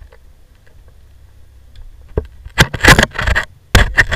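Faint low hum, then from about halfway loud irregular scraping and rubbing right against the microphone, in several bursts with short gaps.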